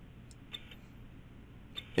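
A few faint, short clicks, spaced roughly a second apart, over a low steady hum.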